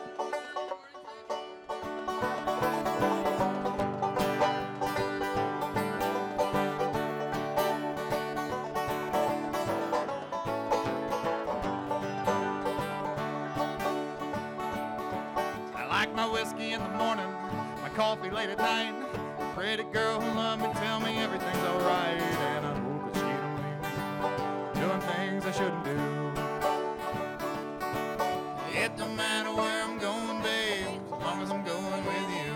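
Live bluegrass trio of banjo, mandolin and acoustic guitar playing an instrumental tune, the sound getting fuller and louder about two seconds in.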